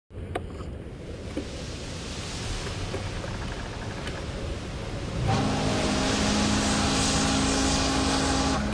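Wind and rolling noise on a bicycle-mounted action camera as the bike gets moving, with a few light clicks near the start. About five seconds in the rushing gets louder and a steady hum with several held tones joins it.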